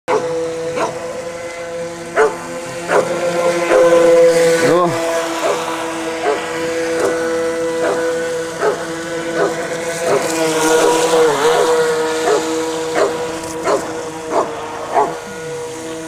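A Cavoodle barking over and over in a steady rhythm, a bark roughly every 0.7 seconds, over the continuous steady whine of a radio-controlled speedboat's motor.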